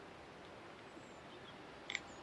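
Faint, steady outdoor background noise with a few faint high bird chirps. The loudest is a brief chirp just before the end.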